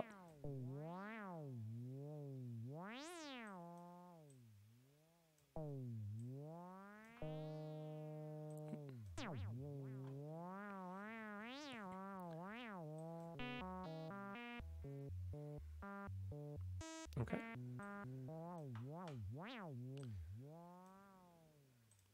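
Native Instruments Massive X software synthesizer holding a note whose pitch a random LFO sweeps up and down, each sweep reaching a different height. The note is restarted twice early on, and in the middle it jumps between pitches in steps for a few seconds before the gliding sweeps return and the note fades out.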